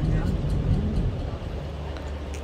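Car cabin noise while driving: a low engine and road rumble, which gives way to a quieter steady low hum about a second and a half in.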